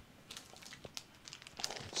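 Faint crinkling and rustling of the packaging around a boxed camera remote control as it is handled, light crackles that grow busier in the second half.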